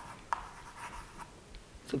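Chalk writing on a blackboard: faint scratching strokes with a sharp tap about a third of a second in as the chalk meets the board.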